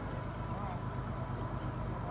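A steady, low engine rumble with no change in pitch.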